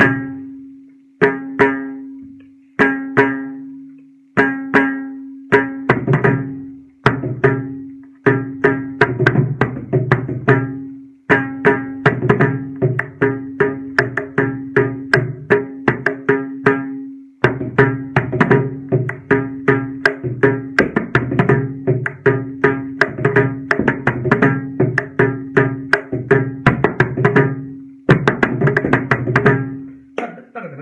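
Mridangam played solo in Adi tala, an eight-beat cycle: ringing strokes on the tuned right head hold a steady pitch, and deep bass strokes from the left head join in. It opens with single strokes about a second and a half apart, then builds into fast, dense rhythmic patterns broken by short pauses.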